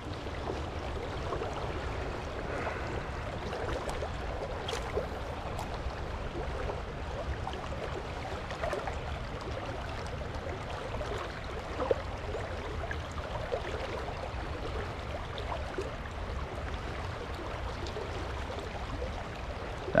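Shallow stream water flowing and rippling steadily, with a couple of faint clicks.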